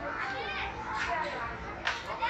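Children's voices and chatter filling a busy indoor play area, with a single sharp knock shortly before the end.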